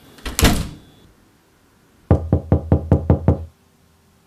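Rapid knocking on a wooden door, about seven quick raps in just over a second, each with a low hollow boom. It comes after a brief loud burst of noise near the start.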